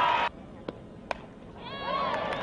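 Crowd cheering cuts off suddenly, leaving quieter ballpark ambience with two sharp cracks; the second, louder crack is an aluminium bat hitting a softball. The crowd's cheering and shouting then rise again near the end.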